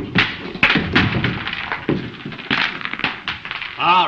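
A gavel banged repeatedly on a wooden desk to call a meeting to order: a quick, uneven run of sharp knocks over a murmur of voices.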